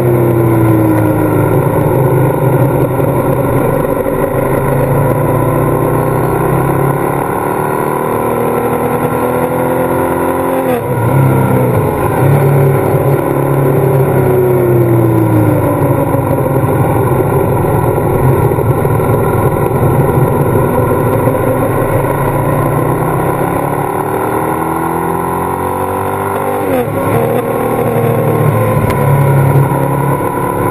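Ducati L-twin motorcycle engine heard from on board while riding, its pitch rising and falling with the throttle. The revs drop sharply twice, about a third of the way in and near the end.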